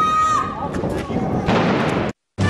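A long, high held shout that breaks off half a second in, then a sudden loud blast about one and a half seconds in that cuts off abruptly, amid riot police breaking up a street protest.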